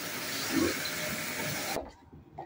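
Vacuum cleaner running steadily, its floor head being pushed over a laminate floor; the sound cuts off suddenly near the end.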